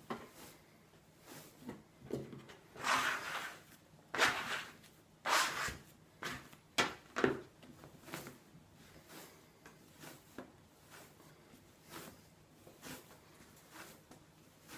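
Sticky, unfloured bread dough being kneaded by hand on a wooden tabletop: the heel of the hand pushes it forward across the wood, then lifts and folds it back. Each push-and-lift stroke is heard roughly once a second, louder in the first half and fainter later on.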